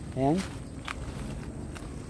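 A few faint crunches of river pebbles shifting underfoot, after a single spoken word.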